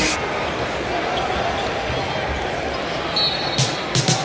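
Steady arena crowd noise with a basketball being dribbled on the court.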